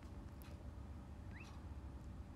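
A clock ticking faintly once a second over a low steady hum in a room. A short rising squeak sounds about two-thirds of the way through.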